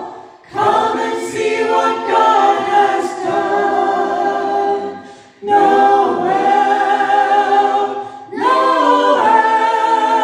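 A small mixed group of men's and women's voices singing together through microphones, in long held phrases broken by short pauses at the start, about five seconds in and about eight seconds in.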